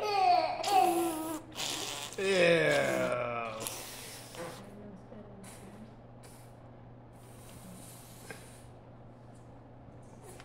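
A toddler's silly wordless vocal sounds: high squeals and calls over the first few seconds, one long call gliding down in pitch, then quiet with a faint low hum.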